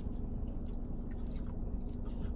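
A person chewing food, with a few short wet mouth clicks, over a steady low rumble.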